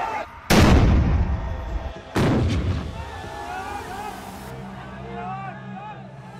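Two loud bangs about a second and a half apart, each ringing out in a long echoing tail, then a crowd shouting.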